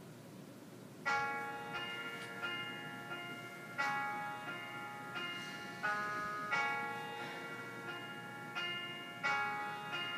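Instrumental backing track's intro: struck, pitched notes that ring and fade, in a steady rhythm starting about a second in, after a moment of room tone.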